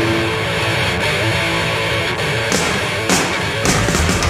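Live heavy metal band playing loud distorted electric guitars as a song gets under way, with cymbal crashes about two and a half and three seconds in and the drums coming in hard near the end.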